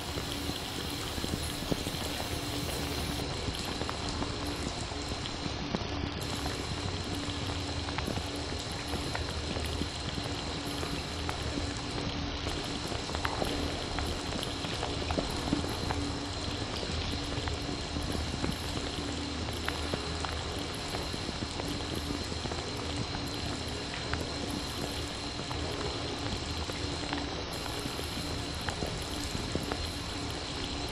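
Shower spray falling on a GoPro Hero 7 Black in a bathtub, heard through the camera's own microphones: a steady hiss of falling water like fairly heavy rain, with faint steady tones underneath.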